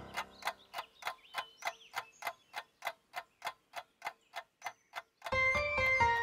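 Clock ticking steadily, about three ticks a second. Keyboard music comes in near the end.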